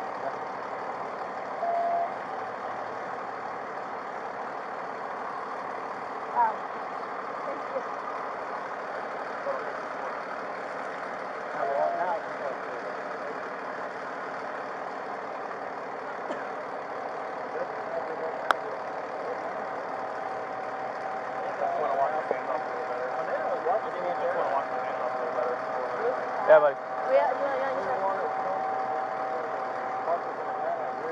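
Steady hum of an idling vehicle engine, with faint voices now and then and a single sharp click about two-thirds of the way through.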